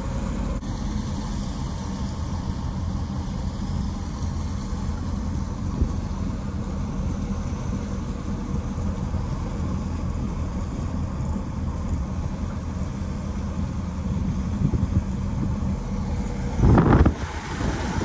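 Camping van driving, its engine and road noise heard from inside the cab as a steady low rumble. A short, louder rush of noise comes near the end.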